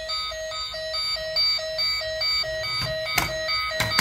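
A toy police car's electronic sound chip beeping a rapid siren pattern, an even electronic tone pulsing about four times a second, with two clicks near the end.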